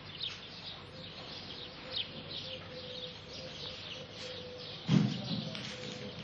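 Small birds chirping repeatedly in short, high calls over a faint steady hum, with one dull thump about five seconds in.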